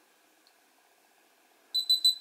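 Near silence while the power button is held, then near the end a quick run of short high-pitched electronic beeps as the RunCam Split camera powers on.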